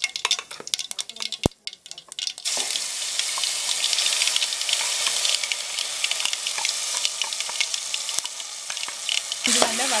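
Wet ground curry-leaf and cashew paste sizzling steadily in hot oil in a stainless steel pot, starting about two and a half seconds in as the paste lands. Before that, metal clinks and a sharp knock from the steel tumbler against the pot as it is tipped and scraped out.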